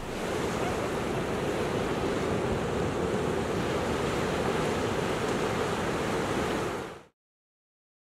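Ocean surf washing onto a beach: a steady rush of small waves that cuts off abruptly about seven seconds in.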